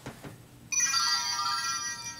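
Electronic ringtone: a chord of steady high tones that starts suddenly under a second in and holds for over a second.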